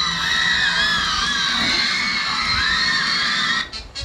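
Music with high melody lines that bend up and down, cutting out abruptly near the end.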